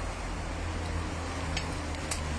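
Outdoor background noise: a steady low rumble under a faint hiss, with a light click about one and a half seconds in.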